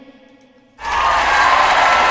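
A sung note fades out, then about a second in a loud burst of crowd cheering and applause starts suddenly and holds steady.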